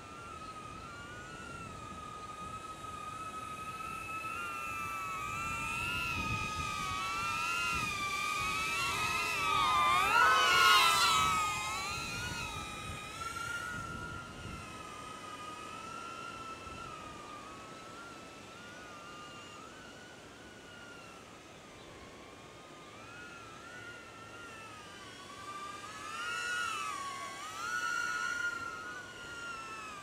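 DJI Neo mini drone's propellers and motors whining, the pitch wavering up and down with the throttle as it is flown by hand in manual mode. The whine swells loudest about ten seconds in with a quick rise and fall in pitch, then fades and swells again briefly near the end.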